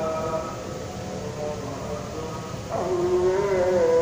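A man's voice chanting Arabic prayer recitation for tarawih in long, slowly gliding held notes. About two-thirds of the way in the voice comes in louder on a new, lower held note.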